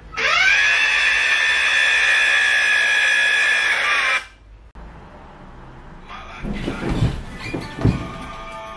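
A loud, high-pitched whine that rises in pitch over about half a second, holds steady for about four seconds and cuts off suddenly. It is followed by rustling and a few thumps near the end.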